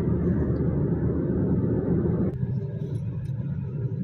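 A car travelling at road speed, heard from inside the cabin: a steady rumble of road and engine noise. About two seconds in, the higher part of the noise drops away suddenly, leaving a lower, duller rumble.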